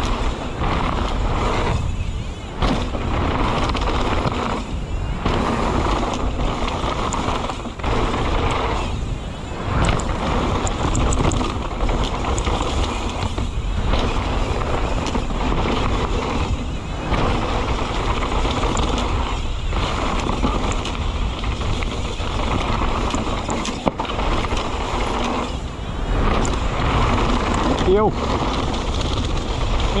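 Wind rushing over a bike-mounted camera's microphone and knobby tyres rolling fast over a dirt trail as a mountain bike descends, with the bike rattling over the rough ground. The noise drops out briefly every few seconds.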